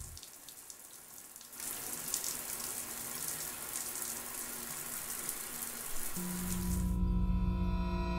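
A steady hiss of falling water that grows louder a second or two in. From about six seconds a low electronic drone with held tones swells in underneath, building toward the track's beat.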